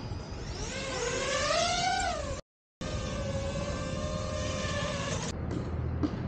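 Quadcopter drone's propellers whining as it lifts off, the pitch climbing and then falling back. After a short break the whine holds steadier while the drone hovers.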